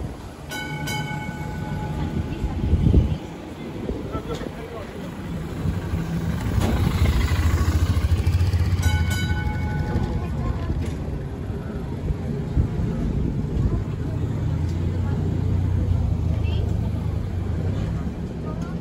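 W-class electric tram running along street track: a steady low rumble of motors and wheels that grows louder around the middle and again later. A thump about three seconds in, and a short ringing tone near the start and again about nine seconds in.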